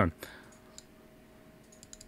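A few faint, isolated computer mouse clicks against quiet room tone, with one near the end.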